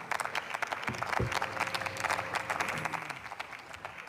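Applause from members seated in the parliament chamber: a dense patter of many hands clapping that thins out toward the end.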